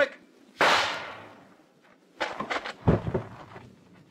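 Radio-drama gunshot sound effect: one sharp shot about half a second in, its report trailing off over about a second. A couple of seconds later comes a brief cluster of knocks ending in a louder, heavy thud.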